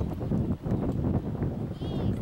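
Muffled hoofbeats of a horse trotting on a sand arena, mixed with low wind rumble on the microphone. Near the end a high-pitched call with a wavering pitch begins.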